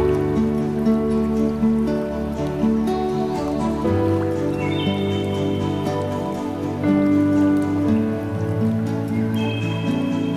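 Slow, calm new-age instrumental music of long sustained chords that change every few seconds, with the patter of rain mixed in underneath.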